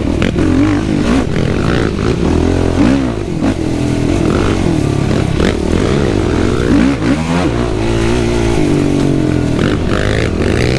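Yamaha YFZ450R quad's single-cylinder four-stroke engine being ridden hard, its revs climbing and dropping again and again, with a few sharp knocks from the machine over the ground. The engine is new and being broken in.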